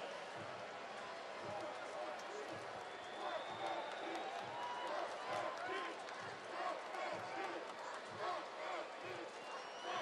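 Stadium crowd ambience: a low, steady mass of indistinct voices with scattered shouts.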